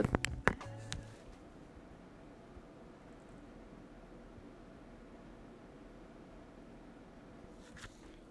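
Computer fans running at full speed: the Enermax ETS T50 tower cooler's 120 mm fan at about 1800 rpm and the case fans at maximum under a CPU stress test, giving a faint, steady whoosh close to the case's glass side panel. A few handling knocks from the microphone come at the very start.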